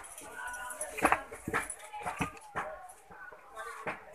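Light, irregular clicks and knocks of hollow plastic display busts being handled and moved, with faint voices in the background.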